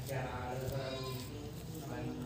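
A man's voice chanting Sanskrit mantras, holding one long drawn-out syllable at a steady pitch.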